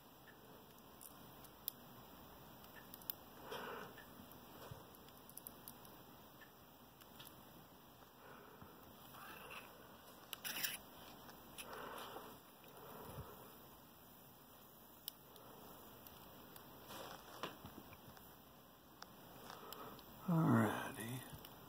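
Faint handling of a lock cylinder and a metal plug follower: scattered small clicks and a few short scrapes and rustles.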